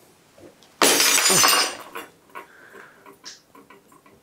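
A glass light bulb drops and shatters on a hard floor about a second in, a sudden crash lasting under a second, followed by scattered small clinks of glass pieces settling.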